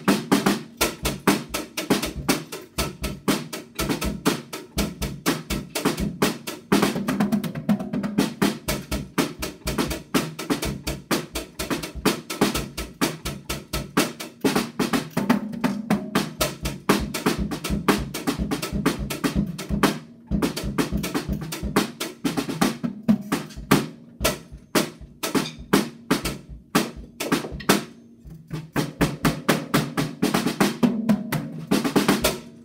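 A child playing a Natal drum kit: a fast, busy run of snare and tom strokes with bass drum, starting abruptly and going on with only a few brief pauses.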